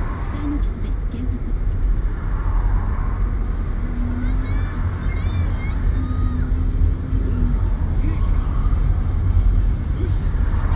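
Steady low rumble of a car's engine and tyres, heard from inside the cabin as it moves slowly in traffic, with faint voices and tones over it.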